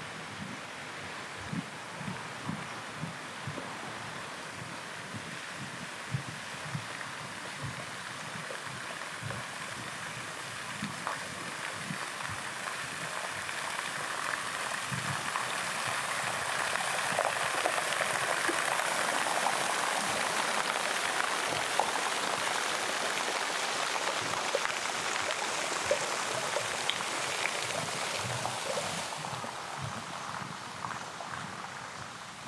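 Rushing water, a steady hiss that swells louder through the middle and drops off suddenly near the end. Footsteps are heard at a walking pace at first.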